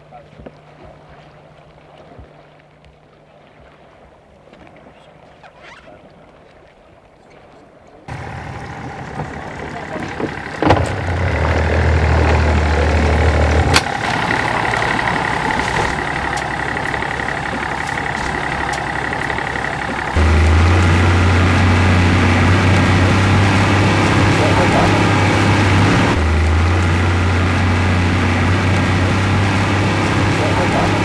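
A quiet stretch with a faint steady low hum, then, from about eight seconds in, a small motor boat's engine running with a low drone under a steady rushing noise; the drone cuts in and out and steps up louder about twenty seconds in.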